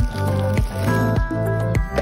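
Background music with a steady beat over sustained chords.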